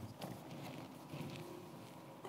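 Faint, scattered soft knocks and rustles of people moving and handling things in a large hall, over a low steady room hum.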